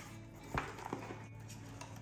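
Faint handling noise of a LiPo battery and its plastic connectors being fitted into a foam model-jet fuselage, with light clicks, the sharpest about half a second in and another near one second in.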